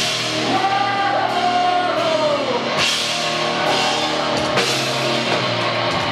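Live rock band playing loud electric guitars, bass and drum kit. A held note slides down in pitch about two and a half seconds in, and crashes break in near three and five seconds.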